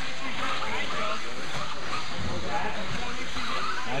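Indistinct chatter of several people in an echoing indoor hall, over a steady background hiss, at a fairly even level.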